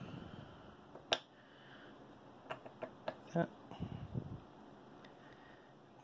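An Intel Core i7-7700K processor being set by hand into the machined metal seat of a Rockit 99 delid tool. There is one sharp click about a second in, then a few lighter clicks and taps about two to three seconds in, with soft handling noise.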